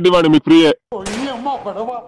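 A man speaking in Telugu, then a sudden sound about a second in with a hiss fading after it, over quieter talk.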